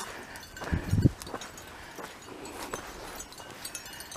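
Footsteps on sandy desert ground, with scattered crackles and scrapes from dry brush and a few dull thumps about a second in.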